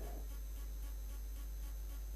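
Steady low electrical hum with a faint buzz on the microphone and sound system's audio line, unchanging throughout.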